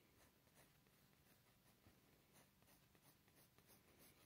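Very faint scratching of a pencil sketching light strokes on paper.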